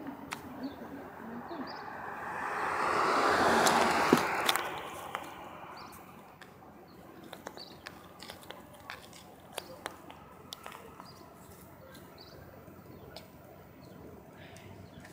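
A rushing noise swells and fades over about two seconds, a couple of seconds in. Scattered faint clicks and ticks follow.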